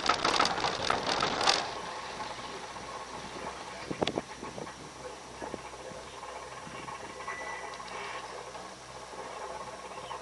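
Inside a moving gondola cable car cabin: a rattling clatter for about the first second and a half, then a steady hum with a few scattered clicks.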